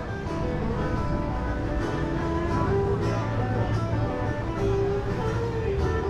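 Guitar playing an instrumental stretch of a song, with no singing.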